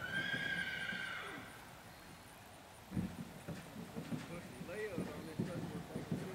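A horse whinnying once at the start: a high call about a second and a half long. Faint voices and a few knocks follow.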